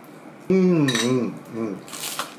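A man's voice humming "mm, mm" in approval while eating, with a longer hum and then a short one, over light clinks of chopsticks against a ceramic bowl.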